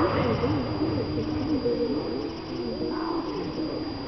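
Indistinct chatter of several voices at once, no clear words, with a short rising cry at the start.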